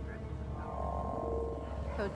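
Low steady rumble of the episode's ambient soundtrack, with faint sustained score tones coming in about half a second in.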